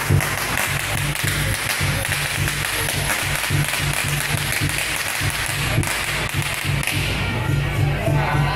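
Loud temple-procession music with dense, rapid percussion strikes and crowd noise.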